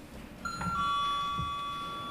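Electronic two-tone ding-dong chime, a higher note followed a moment later by a lower one, both held and slowly fading. It is the kind of hearing-timer chime that marks a speaker's allotted time running out.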